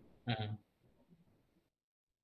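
A man's brief voiced utterance, a single short syllable, about a quarter of a second in, followed by near silence as the call audio gates off.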